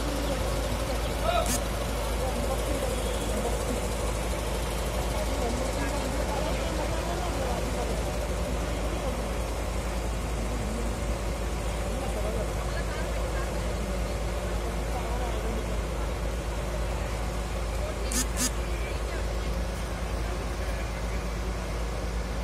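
Diesel engine of a truck-mounted Demag mobile crane running steadily while it holds a suspended metro car, with a low rumble throughout. A short sharp click comes about a second in and a double click near the end.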